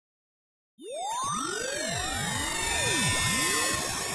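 Electronic sweeping tones, many at once, gliding up and down in pitch in overlapping arcs, starting suddenly about three-quarters of a second in.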